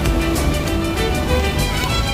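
Background music, a melody of short held notes over a steady beat.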